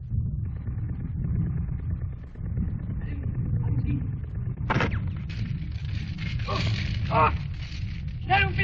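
Battle sound of a 1930s war film: a steady low rumble, with a single sharp shot about five seconds in, followed by a man shouting a little later.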